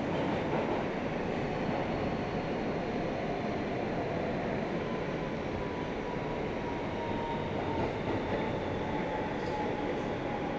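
Inside an R160 New York City subway car running under way: a steady rumble and rush of wheels and motors, with a faint whine that slowly drops in pitch in the second half as the train slows to arrive at a station.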